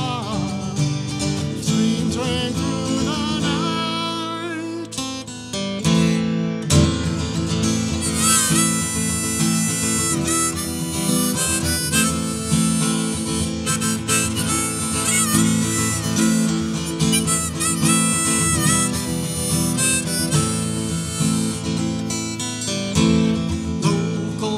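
Harmonica played from a neck rack over strummed acoustic guitar: an instrumental break between verses of a folk ballad, swelling louder about seven seconds in.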